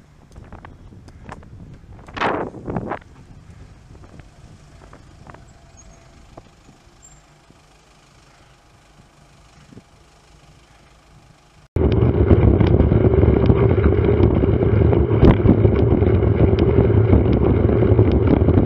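Quiet street traffic with a few light clicks and a brief louder swell about two seconds in. About twelve seconds in, loud, steady wind rumble on a bike-mounted camera's microphone cuts in while riding, over tyre and road noise.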